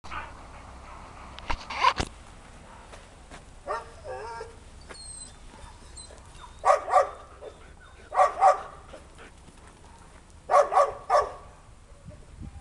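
Dog barking in short runs of two or three barks, repeated about every two seconds.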